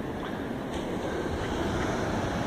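Steady rushing noise of ocean surf breaking on the beach, mixed with wind on the microphone.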